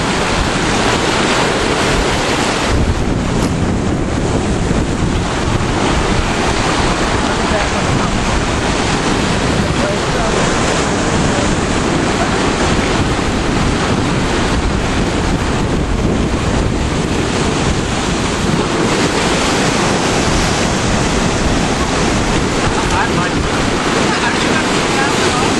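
Ocean surf breaking and washing over lava rocks, a steady loud rush with wind blowing on the microphone.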